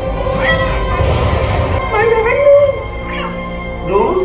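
Kittens meowing several times, the loudest meow about halfway through, over steady film score music.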